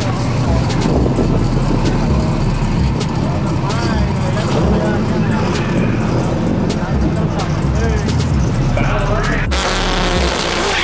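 Drag car's engine running loudly at the starting line, with a steady low rumble and a crackle from the exhaust, while people talk nearby.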